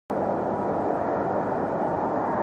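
Twin-engine jet airliner on final approach with its landing gear down: a steady engine roar with a thin whine held at one pitch.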